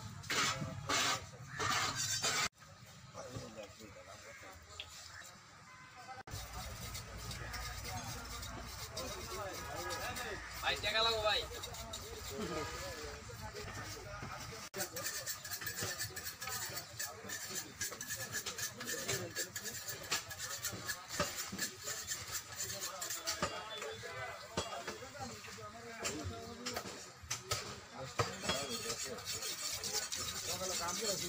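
Indistinct voices mixed with music, the sound changing abruptly several times where the footage is cut.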